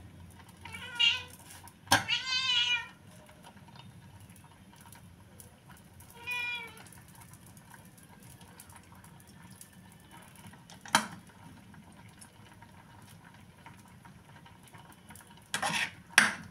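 A cat meowing three times: two calls close together about one and two seconds in, and a shorter one about six seconds in. A single sharp metallic clink comes about eleven seconds in, and utensils clatter near the end.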